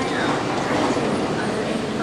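Steady din of an assembly-plant floor, with indistinct voices in the background.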